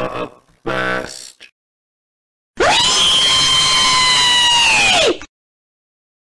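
A short burst of voice, then after a pause a loud, harsh, held vocal scream lasting about two and a half seconds, level in pitch and dropping off at the end.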